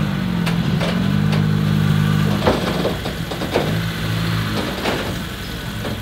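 Honda Civic Si's turbocharged 1.5-litre four-cylinder running at low revs as the car creeps up onto a trailer, the throttle eased on and off so the low hum swells and fades in stretches. A few short knocks sound through it.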